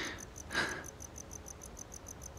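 Crickets chirping in a fast, even, high-pitched pulse, with one short soft sound about half a second in.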